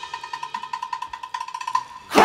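Show-music accompaniment: a single high percussion note struck rapidly and evenly, about a dozen strokes a second, stopping shortly before the end.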